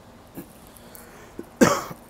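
A man coughs once, sharply and briefly, near the end, after a couple of faint small sounds.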